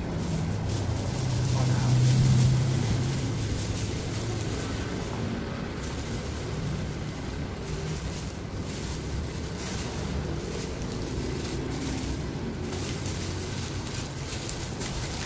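Plastic bubble wrap rustling and crinkling in irregular bursts as it is handled and wrapped around an object, over a steady low rumble.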